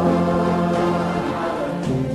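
Music with a choir singing long held notes that move to new pitches every second or so.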